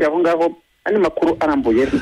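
Speech only: a person talking, as heard over a radio broadcast, with a short pause about two-thirds of a second in.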